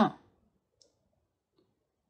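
A woman's "uh-huh" trailing off, then near silence broken by one short, faint click just under a second in.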